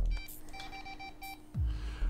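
Handheld EMF meter giving a quick run of five short, evenly spaced electronic beeps, with low thuds of handling just before and after.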